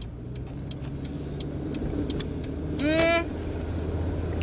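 Steady low hum of a car's engine and road noise heard inside the cabin while driving slowly in traffic. About three seconds in, the driver makes a brief voiced sound that rises, then holds.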